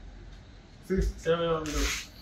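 Speech: after about a second of low room tone, a voice says "Sis?", ending in a drawn-out hissing s.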